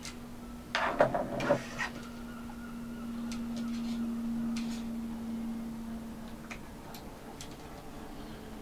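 Hands handling small parts inside an opened ThinkPad X230 laptop: a quick cluster of plastic clicks and rustling about a second in, then a few light clicks, over a steady low hum.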